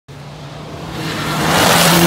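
A Mitsubishi Lancer Evolution rally car approaches at full speed on a gravel stage. Its engine note and the hiss of tyres on loose gravel grow steadily louder until it draws level near the end.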